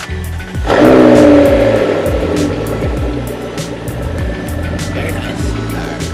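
McLaren 12C's twin-turbo V8 starting up: a sudden loud flare of revs under a second in, the pitch then falling away as it settles toward idle. Background music with a beat plays throughout.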